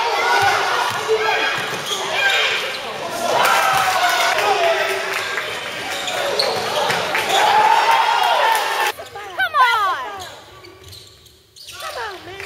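Live basketball game in a gym: players' and spectators' voices echo over a basketball bouncing on the court. About nine seconds in, the voices drop away and a run of short, sharp sneaker squeaks on the court floor stands out.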